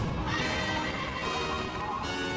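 A cartoon winged horse whinnying over background score music.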